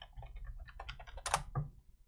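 Computer keyboard typing: a run of soft key clicks, with one louder keystroke a little past the middle.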